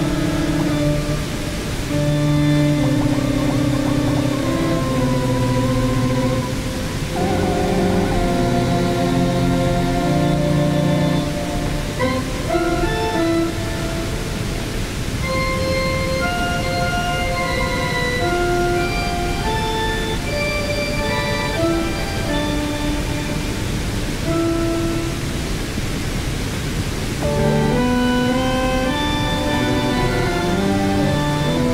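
Improvised synthesizer music played through a small portable speaker over the steady rush of a waterfall. Held low chords change every couple of seconds, then from about twelve seconds in give way to sparser, shorter, higher notes.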